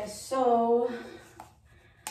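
A woman's voice speaking briefly, then trailing off into a quiet pause.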